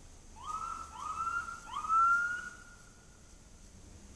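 Police van siren giving three short whoops as the van responds to a call. Each whoop slides quickly up in pitch, holds briefly and fades, and the third is the loudest.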